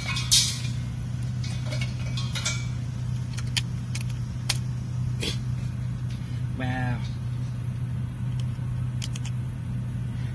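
A steady low hum with scattered light clicks and taps, as of hands working on battery terminals and crimp connectors. A short sharp burst comes just after the start, and a brief murmured voice about two-thirds of the way through.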